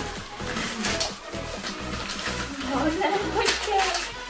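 Background music with a few brief crinkles of plastic gift wrap as a dog noses and tugs at a wrapped present, and a short gliding voice near the end.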